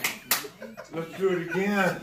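Hands clapping, two sharp claps in the first half second, then a voice calling out with rising and falling pitch.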